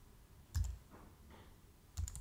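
Slow typing on a computer keyboard: a few separate key clicks, one clear click about half a second in and fainter ones about a second in.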